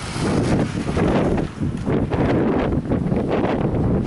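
Loud wind buffeting the camera microphone, rising and falling in gusts.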